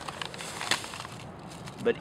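Quiet crinkling of a plastic bag of Epsom salt being handled, with one small sharp click about two thirds of a second in.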